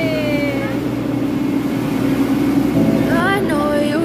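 People's voices over the steady low hum of a train standing at a station platform.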